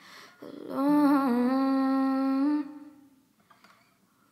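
A woman humming one long held note, with a slight waver near its start, fading away about two and a half seconds in.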